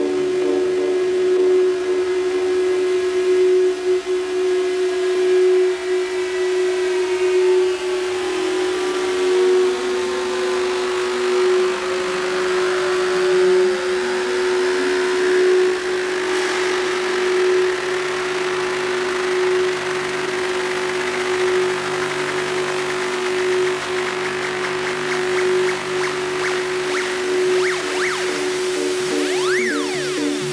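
Techno DJ mix: a steady held synth drone, with tones gliding up and down over it around the middle and a rising hiss that builds through the second half.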